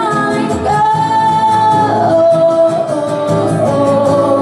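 A woman singing with acoustic guitar accompaniment, holding long notes that step down in pitch over plucked chords.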